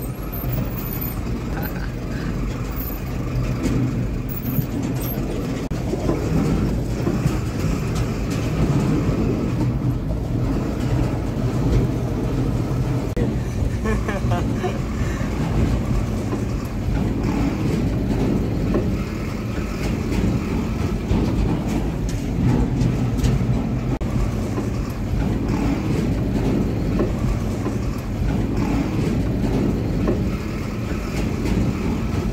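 Engine and running noise inside the cab of a small motor vehicle driving along a narrow-gauge railway track: a steady low drone that continues evenly throughout, with a few faint clicks.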